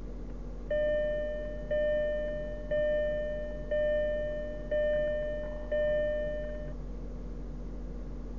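An Audi A8L's in-car warning chime sounds six times, about once a second. Each chime is a bell-like tone that fades before the next.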